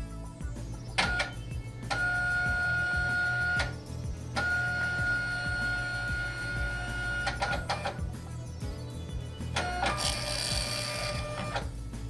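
Zebra ZT230 thermal label printer printing its configuration label after restarting from a firmware update: the feed motor runs with a steady whine in two spells of a few seconds each, with clicks between and a short hiss near the end. Background music plays underneath.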